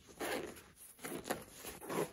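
A zipper on a nylon backpack pouch being pulled open, with fabric handling noise and a sharp click about a second and a quarter in.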